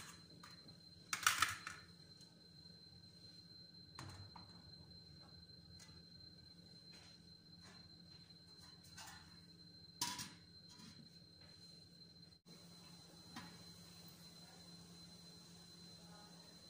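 Metal pan set down on the grate of a gas stove: a brief scrape about a second in, then a few faint knocks, over a low steady hum.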